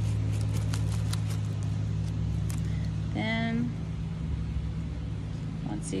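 Fingertips wiping the dried florets off a sunflower seed head: light, dry scratching strokes, over a steady low rumble. A short voiced sound comes about three seconds in.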